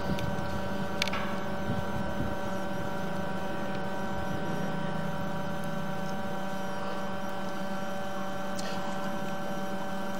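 Steady electrical hum with several high steady whining tones over it, and a single click about a second in.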